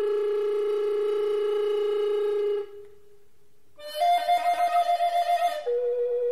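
Solo recorder playing a long held low note that fades out about two and a half seconds in. After a short pause a higher note comes in with a rapid pulsing warble, then steps down to a lower held note near the end.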